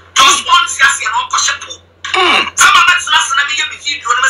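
Speech: a voice talking in quick bursts with short pauses, over a faint steady low hum.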